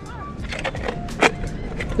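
Plastic snap-on lid of a bait bucket being handled against the bucket's rim: a few light plastic clicks and one sharper knock just past a second in.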